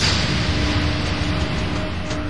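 A dramatic transition sound effect: a sudden rush of noise with a faint steady drone beneath it, fading slowly.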